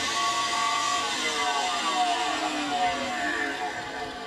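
Electric motor of a homemade belt sander switched on, starting abruptly and running with a hiss and several wavering tones.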